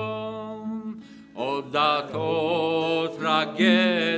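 A man singing, accompanied by acoustic guitar. A long held note fades out about a second in, and a new sung line with vibrato begins just after.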